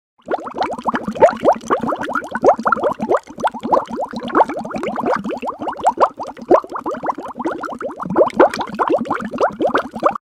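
Bubbling, plopping sound: a dense, loud stream of short rising blips, several a second, stopping abruptly.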